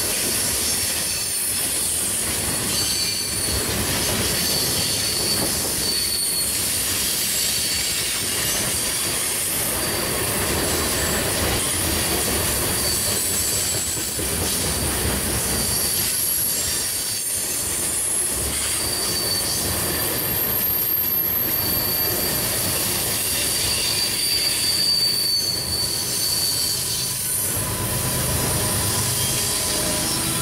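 Covered hopper cars of a freight sand train rolling past steadily, with intermittent high-pitched wheel squeal from the passing wheels. Near the end a deeper rumble comes in as the train's rear diesel locomotive arrives.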